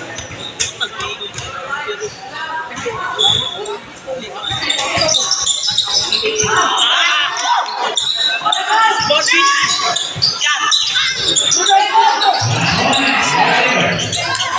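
A basketball being dribbled on a hard court, a run of short bounces, with voices from players and spectators rising over it from about the middle on.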